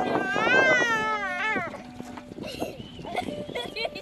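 A high-pitched, wavering laugh lasting about a second and a half, followed by quieter high voices chattering and calling.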